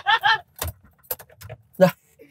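A few light clicks and the jangle of a car's ignition key as it is handled and turned in the dashboard.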